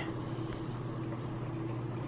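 A steady low hum over a faint hiss, with no other sound: background room tone.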